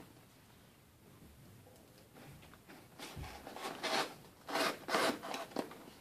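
A Spyderco knife's VG-10 blade slicing through duct tape and cardboard on a taped box: a series of short rasping strokes that start about two seconds in and grow louder toward the end.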